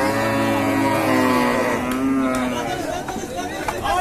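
Cow mooing: one long, low call over the first second and a half, then a higher call, with men's voices shouting around it.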